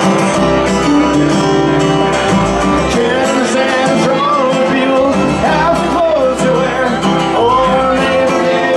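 A live band playing in a country/bluegrass style: stand-up bass notes underneath, guitars and drums, with a voice singing gliding lines over it in the second half.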